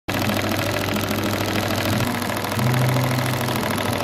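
Cornely chain-stitch embroidery machine running at speed, stitching with a fast, even rhythm over a steady motor hum that shifts pitch slightly about halfway through.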